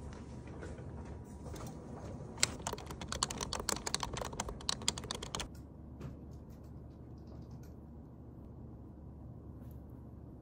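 Computer keyboard typing: a quick run of key clicks lasting about three seconds, over a steady low background hum, followed by a few faint scattered taps.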